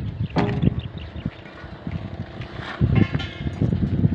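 Sharp knocks of hand tools on a concrete-block building site, the first about half a second in with a brief ring, then a quick cluster of clicks near the end. Wind buffets the microphone in low rumbles throughout.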